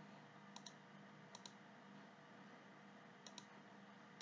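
Faint computer mouse clicking: three quick double clicks, the first about half a second in and the last near the end, over a low steady hum.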